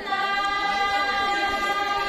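A group of women singing together in unison, holding one long steady note.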